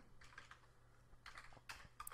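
Faint computer keyboard typing: a few light keystrokes in two short runs as a word is typed into a text field.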